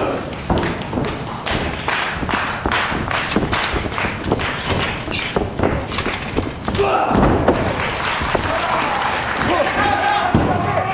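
A run of regular sharp thuds, about two or three a second, in the hall around a wrestling ring. About seven seconds in they give way to shouting voices.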